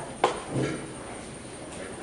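A single sharp knock about a quarter second in, followed by a brief, softer sound.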